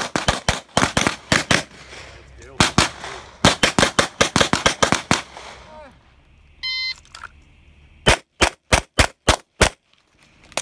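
Handgun shots fired in fast strings, several a second, echoing off the range berms. Past the middle a short electronic beep, the shot timer's start signal, is followed about a second and a half later by a run of six evenly spaced pistol shots.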